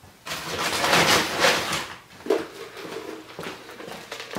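A feed scoop digging into a sack of molasses-coated sweet-feed pellets with corn and oats: a rattling rush of pellets for about a second and a half, then quieter handling and a few footsteps.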